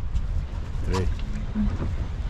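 Steady low rumble aboard a boat at sea, under a man's voice saying "three" about a second in.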